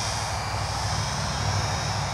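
Flyzone Nieuport 17 micro RC biplane's small electric motor and propeller running steadily in flight, over a steady low rumble.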